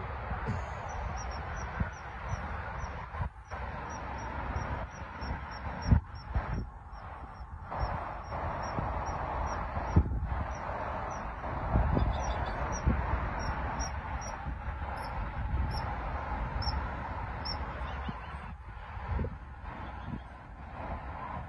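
A bird's short high chirps repeating about two to three times a second, over a steady outdoor background haze, with a few low thumps.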